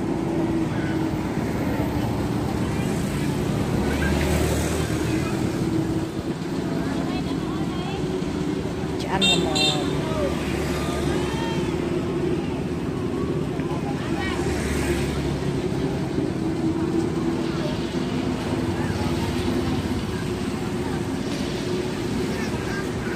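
Steady engine hum with traffic noise and background voices, with a few swells of low rumble and a brief cluster of sharp clicks about nine seconds in.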